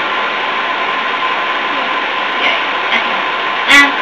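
Steady hiss with a thin, steady high tone, holding at an even level: the constant background noise of the room and recording. A brief word breaks in near the end.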